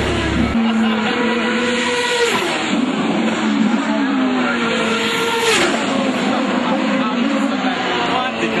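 Race car engines at high revs on the track, their pitch climbing and falling as the cars accelerate and pass, with a sharp drop in pitch about two and a half seconds in and again around five and a half seconds.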